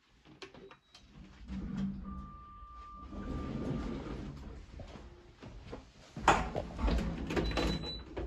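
Footsteps and movement into an Orona traction lift car, with a steady electronic beep about two seconds in. About six seconds in, a louder rumble and clatter starts as the lift's automatic sliding doors begin to move.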